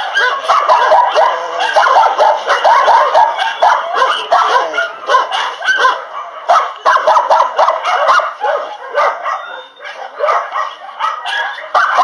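Several kennelled dogs barking and yipping at once, a dense, overlapping chorus with only brief lulls.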